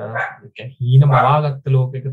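A man's voice speaking, with short pauses; one stretch about a second in is louder and more emphatic.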